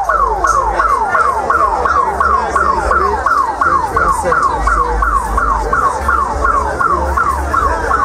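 Dub siren sounding in quick, evenly repeated falling sweeps, about three a second, over the sound system's deep bassline.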